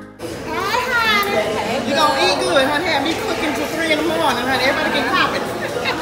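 Indistinct chatter of many overlapping voices, children's among them, in a large room.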